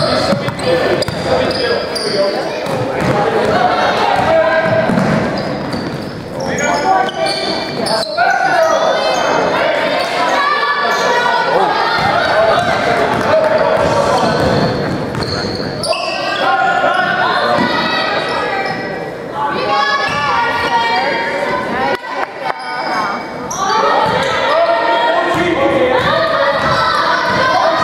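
Basketball game in a gymnasium: the ball bouncing on the hardwood floor and players' sneakers on the court, with voices calling and shouting throughout, echoing in the large hall.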